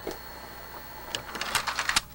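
Hitachi-built RCA VCR's tape transport whirring steadily as the tape rewinds. About a second in, a quickening run of sharp mechanical clicks from the deck's mechanism begins.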